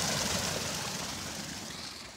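Water pouring off a wooden flume onto an overshot waterwheel and churning out below it: a steady rush that fades away.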